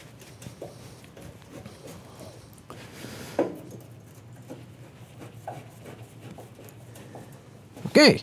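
Faint clicks and scrapes of a hand screwdriver turning a screw into the metal casing of a diesel space heater, over a low steady hum. A brief vocal sound comes about three and a half seconds in.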